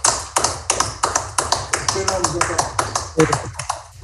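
Hands clapping in a steady rhythm, about four or five claps a second, sounding thin as it comes through a video call, and thinning out near the end.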